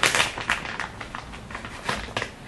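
Handling noises from small plastic eyeshadow palettes being picked up and worked: a burst of rustling and clicking at the start, a few softer clicks and scrapes, and another click near the end.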